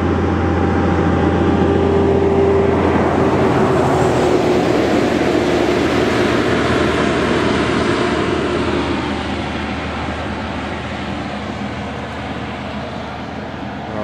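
A road vehicle passing close by: its tyre and engine noise swells in the first few seconds, then fades away gradually over the second half.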